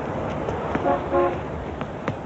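Vehicle horn tooting twice in quick succession, two short notes about a second in, over steady outdoor street noise with scattered clicks.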